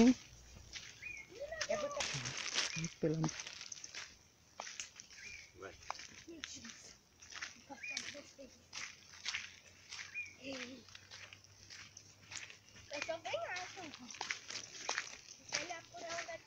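Footsteps crunching on a dry dirt-and-stone trail, irregular and fairly quiet, with faint low voices now and then.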